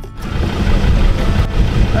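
Wind buffeting the microphone outdoors: a steady low rumbling rush that swells over the first half second.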